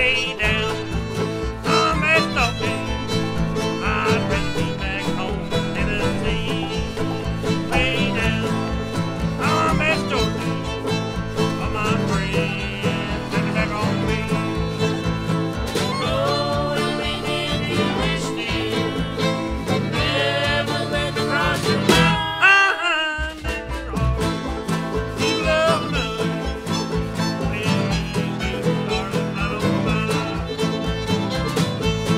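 Old-time string band music played live: fiddle and banjo lead over guitar and washtub bass with a steady beat. About three quarters of the way through, the bass and beat drop out for about a second, then come back in.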